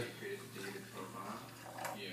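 Hot water poured from a plastic jug onto coffee grounds in a glass French press, a quiet pour to cover the grounds for the bloom.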